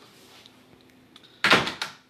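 A quiet stretch, then about one and a half seconds in a sudden short clatter: two or three knocks close together that die away within half a second.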